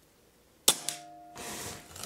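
Air Arms S510 .177 PCP air rifle firing a single shot: one sharp crack about two-thirds of a second in, followed by a faint ringing tone and a small click, then a short softer rush of noise.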